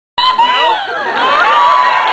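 Audience cheering and shouting, many high voices calling out over one another at once.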